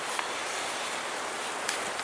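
Heavy rain downpour heard from inside a garage as a steady hiss, with a couple of faint clicks.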